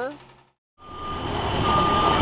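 Street traffic noise fades out to a brief silence and back in at an edit. After that a steady high electronic beep sounds twice, the second louder, over the traffic.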